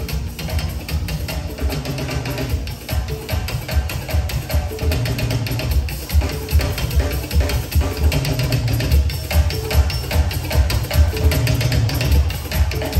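Live party band music with a busy drum and percussion beat over a strong bass line.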